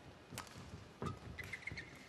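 Badminton rally: rackets striking the shuttlecock in sharp cracks, about twice, with shoes squeaking on the court mat about halfway through and soft footfalls.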